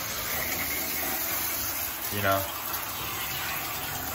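Shower running: water spraying from the shower head in a steady hiss.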